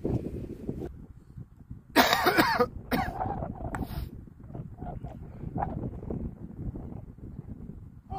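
Gusty wind buffeting the microphone with a low, unsteady rumble. About two seconds in comes the loudest sound, a short vocal burst from a person, like a cough, followed by two shorter, fainter bursts.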